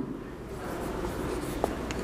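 Marker pen writing on a whiteboard: the felt tip scratching steadily across the board, with a couple of light ticks near the end.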